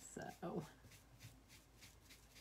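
Foam brush being stroked back and forth over raw wood, spreading stain: faint, quick, even swishes about four or five a second. A short murmur of a voice comes near the start.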